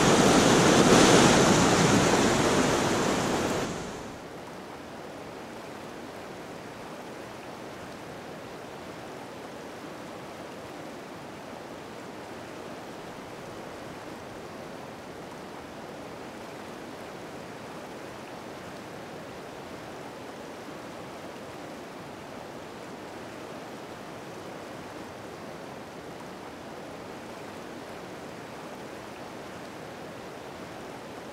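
The tail of a song fades out over the first four seconds, then the steady rush of a whitewater river's rapids runs on evenly.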